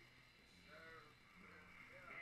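Near silence with faint voices in the background.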